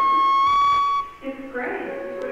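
A steady, high-pitched whistle-like tone, stepping slightly up in pitch about half a second in and stopping about a second in, followed by a voice.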